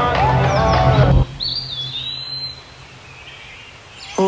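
Music cuts off suddenly about a second in, then a bird chirps once in a short wavering call over faint outdoor background noise.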